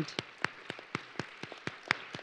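Sparse hand clapping close to a microphone: sharp single claps about four a second, over light applause that dies away.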